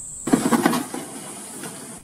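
Cardboard rustling and scraping as a packed part is slid out of a carton, busiest in the first second and then dying down, with a steady high thin tone behind it.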